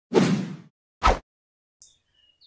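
Two swoosh sound effects from an animated video intro. The first fades out over about half a second, and a second, shorter and sharper one comes about a second in.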